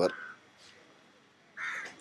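A single short, harsh bird call near the end, in a pause between a man's words.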